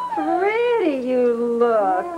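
A woman's voice drawn out into two long sliding tones, the pitch rising and falling slowly, like a stretched, sing-song exclamation rather than ordinary talk.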